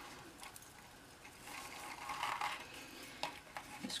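Faint rustle of a metallic-edge ribbon being pulled and wrapped around a small cardstock box, swelling around the middle, with a few light ticks.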